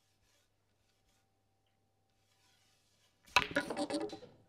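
Near silence, then a little over three seconds in, the loud sharp crack of a snooker cue driving hard through the cue ball and the cue ball striking the black in quick succession: a powerful deep screw-back shot.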